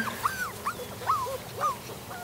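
Young puppy whimpering: a string of about half a dozen short, high whines, each rising and then falling in pitch.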